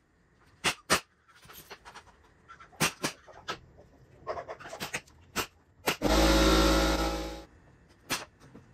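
Sharp, irregularly spaced clicks and knocks from cabinet assembly work with clamps and a nail gun. About six seconds in, a loud steady rush of noise with a low hum lasts about a second and a half.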